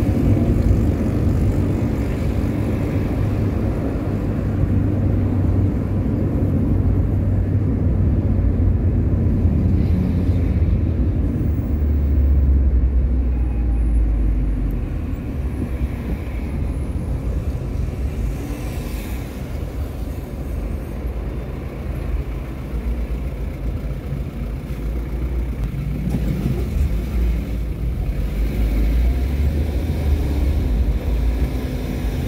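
Road and engine noise heard from inside a moving car: a steady low rumble that swells for a few seconds around the middle and again near the end.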